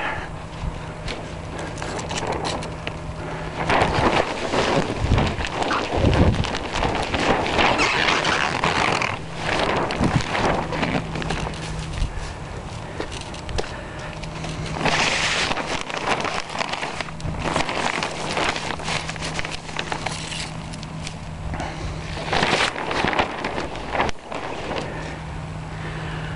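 Clear plastic sheeting rustling and crinkling in irregular bursts as it is unrolled from a pipe down over the hoops of a low tunnel.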